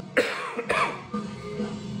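A man coughs twice into his hand, about a quarter second and three-quarters of a second in, over a live hard-rock concert recording playing in the background.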